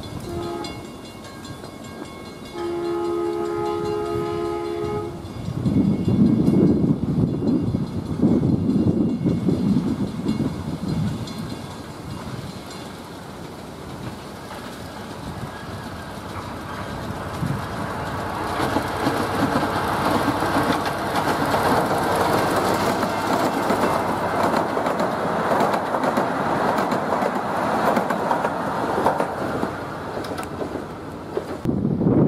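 Miniature railroad train: its horn gives a short toot, then a longer two-tone blast of about two and a half seconds. A low rumble follows, and then the train's running noise and wheels clacking on the rails grow louder as it approaches.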